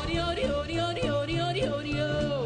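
A female singer scat-singing a wordless swing-jazz line over a backing band: a run of short rising notes, then a long held note that slides down near the end.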